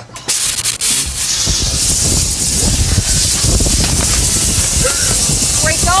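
A loud, steady rushing hiss of air, with a deep low rumble under it, sets in just after the start and keeps on without a break.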